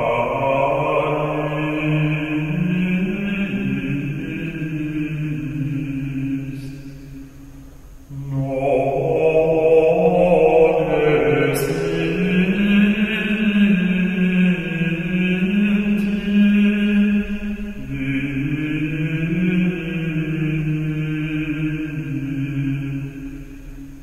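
Slow sung devotional chant in long held notes, the melody stepping slowly between a few pitches. One phrase fades out about seven seconds in and the next begins a second later.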